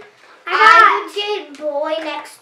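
A young girl's high voice: a loud, drawn-out exclamation about half a second in, rising then falling in pitch, followed by more vocalising near the end.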